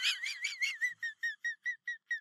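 A high, warbling whistle-like tone that wavers up and down in pitch, then breaks into short repeated chirps, about six a second, that fade away like an echo trailing off.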